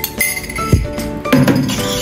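Metal spoon clinking against a ceramic bowl several times while stirring a liquid sauce, over background music.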